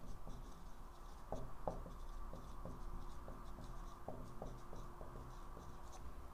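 Whiteboard marker writing on a whiteboard: a faint, uneven run of short strokes and taps of the tip as words are written.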